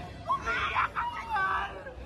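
Several people shrieking and crying out in high voices whose pitch rises and falls, in short calls with gaps between them.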